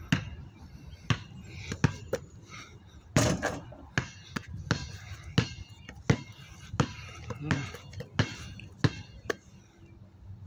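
Basketball dribbled on concrete: a run of sharp bounces that settles into an even rhythm of about three bounces every two seconds.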